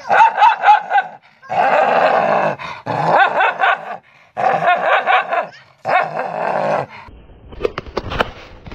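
Small dog snarling, growling and barking at its own reflection in a mirror, in several spells of rapid bursts broken by short pauses; it stops near the end.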